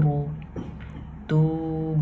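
A man's voice reading Arabic syllables in a slow, chant-like intonation, holding each long vowel on a steady pitch as the elongated "oo" of waw maddah is stretched. One held note ends just after the start, and a new one begins about a second and a half in.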